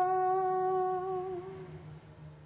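A single voice holding one long note, steady in pitch with a slight waver near the end, then fading out over the last half second: the closing note of an unaccompanied Sufi hymn (ilahi).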